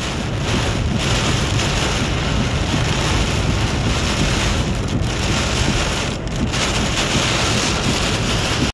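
Heavy rain pounding on a moving car's windshield and roof, heard from inside the cabin: a steady, loud hiss with a low rumble underneath.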